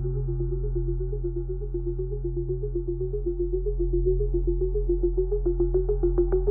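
Dark electronic synthesizer music: a steady low synth drone under a short repeating synth figure, with regular sharp percussive ticks coming in about five seconds in.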